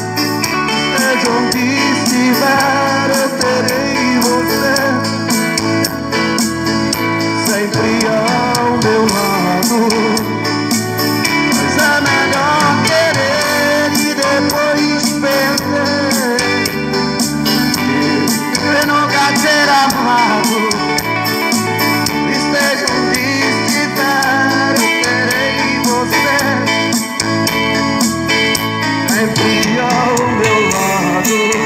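A man singing a slow ballad live into a handheld microphone, amplified through a portable loudspeaker over a recorded instrumental accompaniment.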